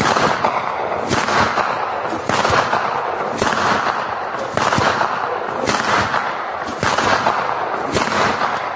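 Loud, noisy, gunfire-like bursts that swell in a steady pulse about once every second and a bit.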